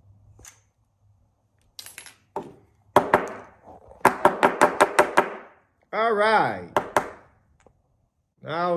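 Wooden dowel pieces (the drilled broomstick popper bodies) knocking together: a few separate clacks, then a quick run of about eight sharp clacks in just over a second. A short hum of voice follows, and two more clacks come near the end.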